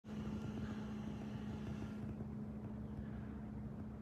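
Faint, steady low hum over a low rumble: background noise with no distinct event, a light hiss above it fading out about halfway through.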